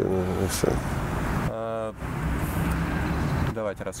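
Road traffic going by: a steady rushing noise with a low rumble.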